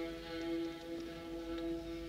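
Orchestra playing a soft, slow passage of held chords, strings to the fore, on an old 1944 studio recording.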